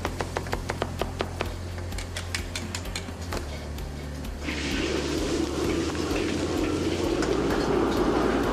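Kitchen knife chopping carrots on a cutting board in quick strokes, about four or five a second, for the first three seconds or so. From about four and a half seconds in, a steady rush of a gas wok burner's flame with food sizzling in the wok takes over.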